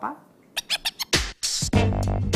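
A short lull, then a jingle starts about half a second in: a few quick clicks, then drums, bass and electric guitar from about a second in.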